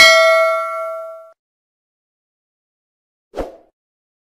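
Notification-bell 'ding' sound effect, a bright bell-like tone that rings out and fades over about a second. A short soft thump follows near the end.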